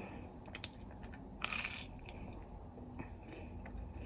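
A person chewing a bite of toast with the mouth closed, with a few faint crunches, the clearest about one and a half seconds in.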